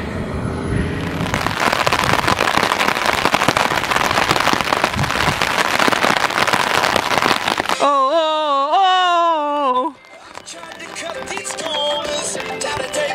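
Wind buffeting and crackling on the microphone for several seconds, followed about eight seconds in by a child's long, wavering call lasting about two seconds.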